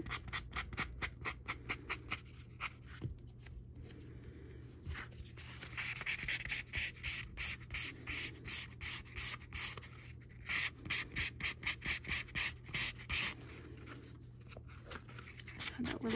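A super-fine sanding sponge rubbed lightly back and forth over the painted edge of a vinyl tab, smoothing a dried coat of edge paint before the next coat. Short scratchy strokes come about four a second, in runs with a brief pause a few seconds in.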